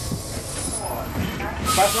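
Interior of a NABI 40-SFW transit bus with the low rumble of its Cummins ISL9 diesel, then near the end a loud burst of compressed-air hiss from the bus's air system starts and keeps going.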